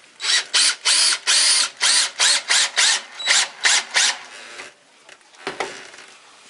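DeWalt DCD780M2 18 V cordless drill/driver driving a screw into a wooden block in a quick series of short bursts, about three a second, for most of four seconds. A single thump follows near the end as the drill is handled.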